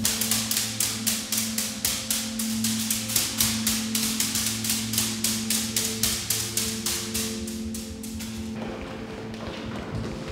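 Rapid, fairly even tapping, about four or five light strikes a second, from hands patting the backs of people bent forward. It stops about eight and a half seconds in. Under it runs steady droning music.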